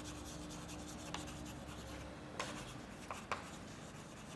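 Chalk writing on a blackboard: faint scratching of chalk strokes, with a few sharper taps as the chalk strikes the board.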